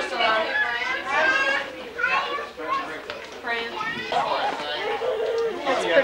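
Several people talking over each other, children's voices among them; the words are not clear.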